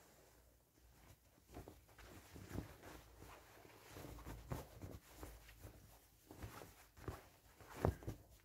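Faint rustling and brushing of a fabric bodice being handled and turned, in scattered soft bursts starting about a second and a half in, with a sharper knock near the end.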